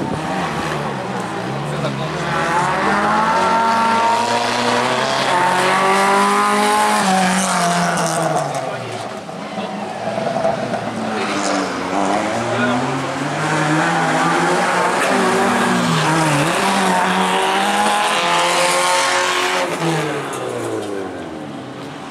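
Autocross racing car engines revving hard on a dirt track, the pitch climbing and dropping again and again as the cars accelerate out of corners and lift off, with two engines heard at once at times.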